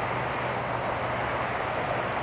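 Steady, even noise of distant vehicle engines, heard outdoors across open water.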